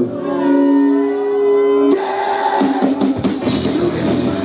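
Live rock band with electric guitars, bass and drum kit. A chord is held and left ringing for about two seconds, then the full band comes back in abruptly.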